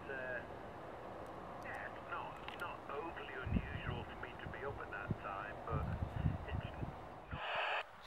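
Faint, thin voice of another amateur station coming through the small speaker of a Yaesu FT-817 transceiver on 2 m VHF, with wind buffeting the microphone in a few gusts. A short burst of receiver hiss comes near the end.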